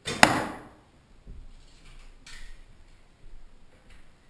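A bow shot: the bowstring released, then about a quarter second later the arrow striking the target with a loud, sharp hit that rings away over about half a second. Quieter rustling and light knocks follow.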